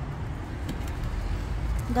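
A low, steady rumble with no clear events in it.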